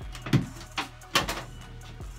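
Three short knocks and rustles close to the microphone, a third of a second, a little under a second and just over a second in, over faint background music.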